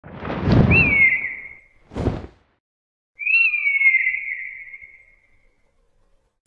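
Logo sound effects: a low rumble with a long, descending raptor screech (the stock eagle cry), a short low thud, then a second screech that fades away.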